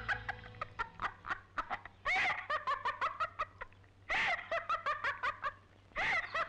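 A woman laughing in three bouts of quick, high-pitched laughs, each starting strong and trailing off.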